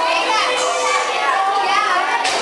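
A crowd of children talking and calling out all at once, many high voices overlapping in a steady babble.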